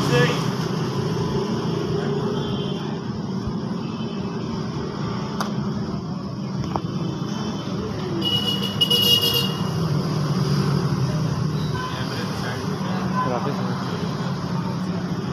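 Indistinct voices over steady outdoor background noise, with a brief high-pitched tone lasting about a second, about eight seconds in.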